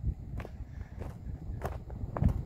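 Footsteps walking over dry grass and weeds on gravelly ground: several steps at an even walking pace.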